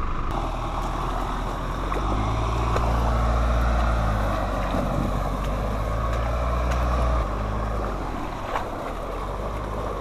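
Holden Colorado 4WD engine running as it works along a muddy track, its steady low hum growing louder about two seconds in and dropping back suddenly at about seven seconds.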